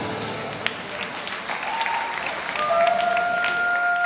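Audience clapping over the performance music, with a long, steady held note coming in about three seconds in.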